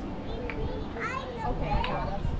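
Children's voices calling out and chattering, with no clear words.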